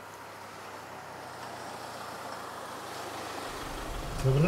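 Jaguar F-Pace SUV rolling slowly up to the curb: a steady hiss of tyres and engine that grows gradually louder as it nears, with a low rumble joining near the end.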